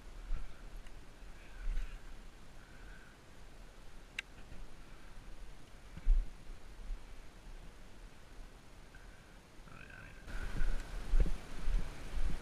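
A frog croaking in short calls several times, with a pause in the middle and a run of calls near the end, over low wind rumble on the microphone. A single sharp click comes about four seconds in.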